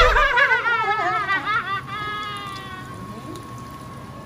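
A person's voice making a playful, wavering sung sound for about two seconds, then holding one note that trails off slowly.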